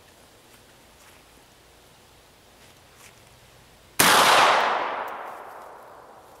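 One shot from a 20-gauge Stoeger M3020 shotgun firing a handloaded Thug Slug, about four seconds in: a sharp report that dies away over about two seconds.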